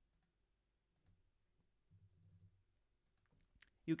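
Faint, scattered clicks of a computer mouse as items are selected in a web form, a few single clicks spread over the seconds.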